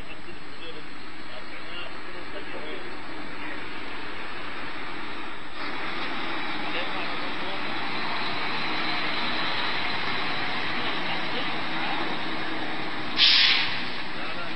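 Heavy trucks running, the noise growing louder about halfway through, with one short, loud air-brake hiss near the end.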